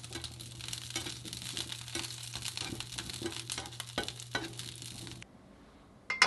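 Shallots and asparagus sizzling in a nonstick frying pan over a gas flame, with light clicks of tongs against the pan over a low steady hum. The sound cuts off abruptly about five seconds in.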